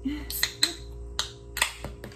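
About five sharp clicks or snaps in under two seconds, unevenly spaced, with two very short hums of a voice near the start.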